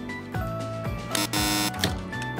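Background music with a steady beat and a melody of held notes. A loud, short noisy rush, about half a second long, comes a little past a second in.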